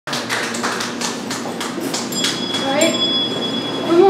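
Handbells being rung: a series of short sharp strikes, then one high bell ringing out clearly for most of a second about two seconds in.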